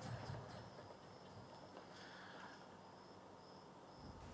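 Near silence: faint background tone with a thin, steady high-pitched whine.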